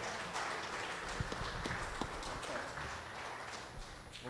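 Scattered applause from a congregation, irregular claps over a room wash, thinning out and fading toward the end.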